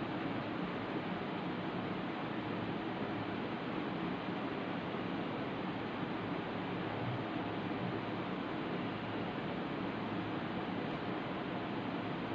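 Steady background hiss with no other sound standing out.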